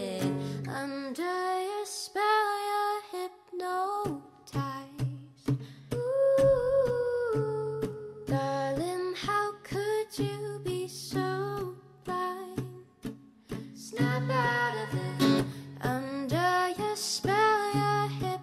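A woman singing, with some notes held long, over a steadily strummed acoustic guitar.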